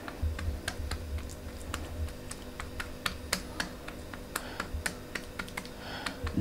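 Light, irregular clicks and taps as a silicone spatula presses chopped nuts into soft kalakand in a metal tray, with a few dull low thuds in the first two seconds.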